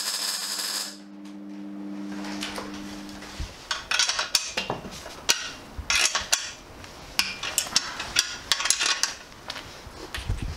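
MIG welding arc crackling and hissing for about a second, with a steady electrical hum from the welder running on until about three seconds in. Then irregular metallic clinks and knocks as the welded steel bracket is handled and fitted against the frame.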